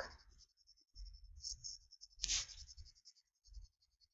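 Faint handling noises: a few soft low bumps and a short scratchy rustle a little past the middle.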